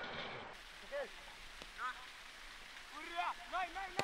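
A few short vocal shouts without clear words, each rising then falling in pitch: one about a second in, another near two seconds, and a quicker run of them in the last second, over a steady outdoor hiss.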